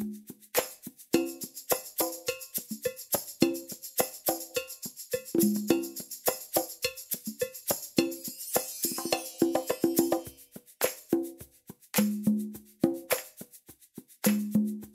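Pop percussion loop at 210 beats per minute in 4/4, used as a metronome: a fast, even stream of short pitched hand-percussion hits with high shaker-like ticks, and a brief shimmering wash about eight seconds in.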